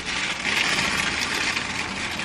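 Car cabin noise with the engine idling: a steady hiss over a low hum.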